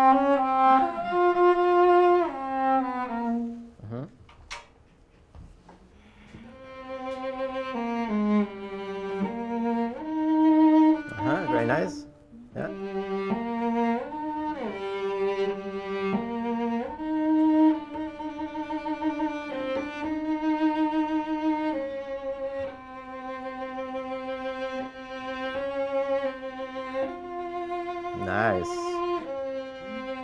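Solo cello playing a slow, connected melody with vibrato. The phrase stops about four seconds in, and after a short pause a second cellist takes up the passage and plays it through.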